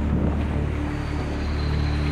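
Commuter RER train arriving at a station platform: a steady rumbling noise, with a faint high whine coming in about a second and a half in. A steady low music bed runs underneath.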